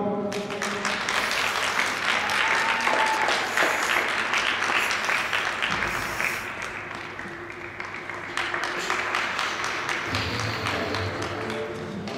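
Audience applauding in an ice rink arena for a figure skater's finished program, the clapping easing somewhat partway through. Near the end, music with a low bass line starts.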